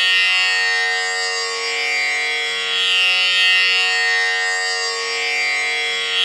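A tanpura drone sounds on its own, with no voice. Its strings are plucked in a slow repeating cycle, and the buzzing upper overtones swell and fade every few seconds.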